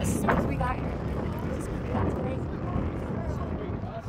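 Wind buffeting an outdoor phone microphone: a steady low rumble, with brief snatches of a voice in the first second.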